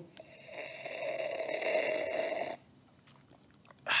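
A man's long breathy, snore-like noise made close to a webcam microphone. It lasts about two and a half seconds, then stops.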